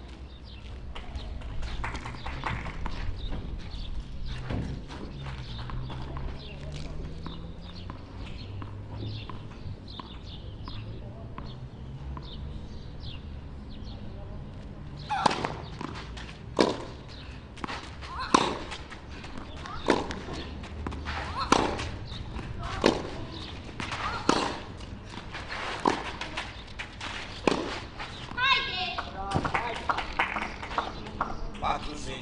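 Tennis rally on a clay court: a racket strikes the ball about every one and a half seconds, with the shots going back and forth from about halfway through. Before the rally there is only low background murmur.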